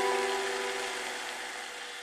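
Background music: the last plucked-string notes ring out and slowly fade, with no new notes struck.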